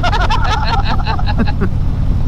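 Steady low rumble of a motorcycle at highway speed, engine and wind together, with laughter over it for about the first second and a half.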